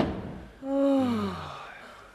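A sharp knock right at the start, then a woman's long wailing sigh that falls steadily in pitch, a sob of fear turning to relief.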